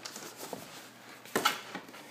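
Cardboard box being handled as its lid is lifted open, with a faint click about half a second in and a sharper knock about a second and a half in.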